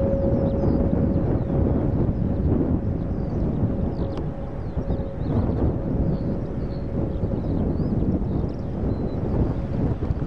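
Low, steady jet rumble of an Airbus A320-233's IAE V2500 engines on final approach, mixed with wind on the microphone.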